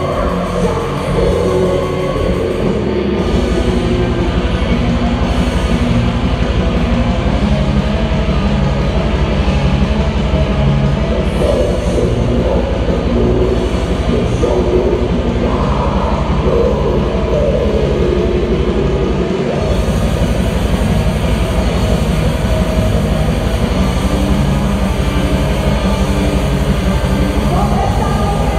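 Black metal band playing live: distorted guitar and bass over fast, dense drumming, with a woman's singing voice coming in at times.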